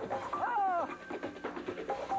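Stage-show music playing, with a short swooping tone that rises and then falls about half a second in.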